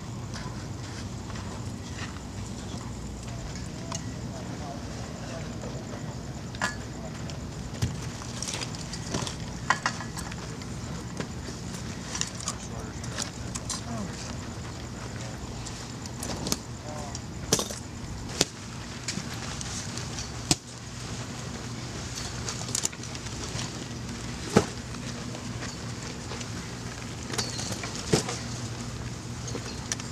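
A steady low hum runs under scattered sharp knocks and clatter of people moving about with gear, with faint indistinct voices.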